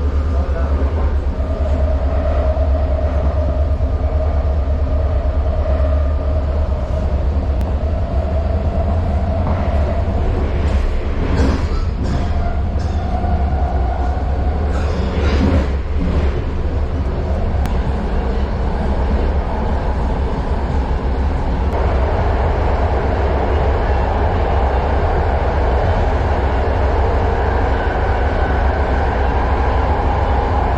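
BART rapid-transit train heard from inside the car while running at speed: a steady low rumble of wheels on rail with a wavering whine over it. About two-thirds of the way in, a louder rushing noise joins the rumble.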